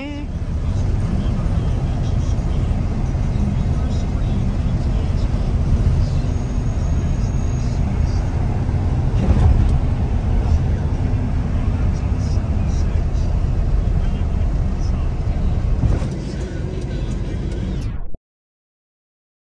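Steady engine and road rumble heard from inside the cab of a moving truck as it drives along a street, easing off somewhat near the end.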